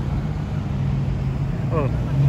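Car engines running at low speed in slow street traffic: a steady low rumble. A brief spoken exclamation comes near the end.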